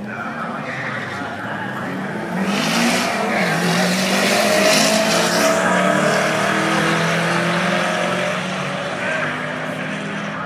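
Ford Mustang accelerating hard down a quarter-mile drag strip, its engine pitch climbing through the gears; it gets much louder about two and a half seconds in as the car comes past and then slowly fades.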